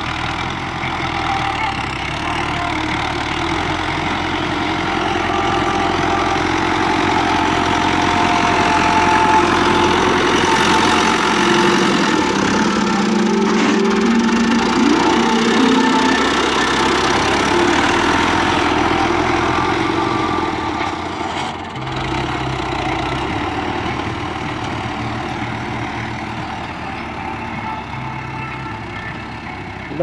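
Farm tractor's diesel engine working under load while dragging a rear scraper blade through the soil. It grows louder as the tractor passes close by around the middle, then fades as it moves away.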